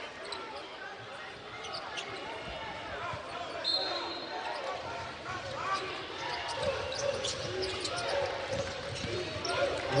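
Arena crowd noise at a college basketball game, with a basketball being dribbled on the hardwood court and voices shouting in the hall. A brief high tone sounds about four seconds in.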